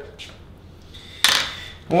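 One short clatter, a little over a second in, as a metal spoon and a scooped-out avocado half are set down on a wooden chopping board.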